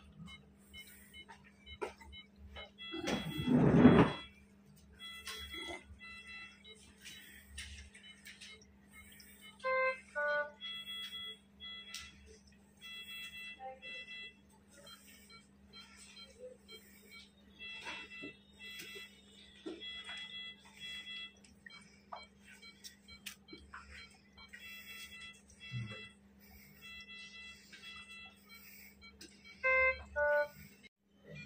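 Hospital bedside monitor alarm beeping in short repeated groups of high tones, with a short chime of several notes about ten seconds in, over a steady low hum of bedside equipment. A brief voice about three seconds in.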